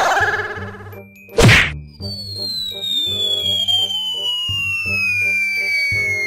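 Comedy sound effects over background music: a loud whack about a second and a half in, followed by a long whistle that slides slowly down in pitch, a cartoon flying-away effect.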